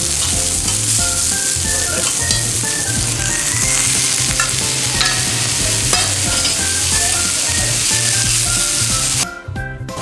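Bean sprouts, cabbage and yakisoba noodles sizzling steadily on a hot cast-iron griddle plate as they are worked with tongs. The sound cuts out briefly just before the end.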